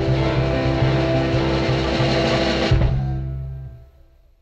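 R&B band with guitar playing the closing bars of a song after the vocal has ended, finishing with a final hit about three seconds in that rings out and fades away.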